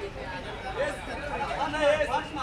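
Overlapping voices of several people chattering and calling out at once, with no single clear speaker.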